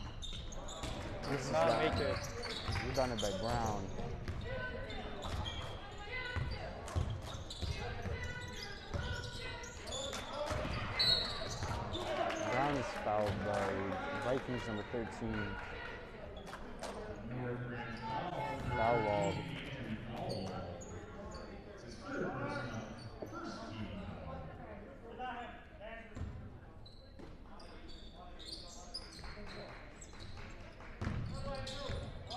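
A basketball bouncing on a hardwood gym floor during play, with indistinct voices of players and spectators calling out throughout.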